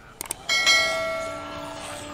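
A notification-bell sound effect from an animated subscribe button: two quick mouse clicks, then a single bell strike about half a second in that rings on and slowly fades.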